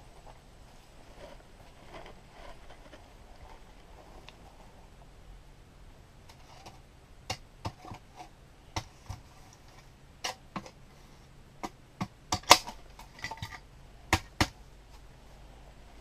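A few seconds of faint background hiss, then from about seven seconds in a run of sharp, irregular clicks and knocks, loudest a little past the middle: handling noise from the camera being moved and covered.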